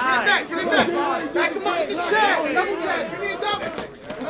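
Crowd of spectators chattering and calling out, several voices overlapping.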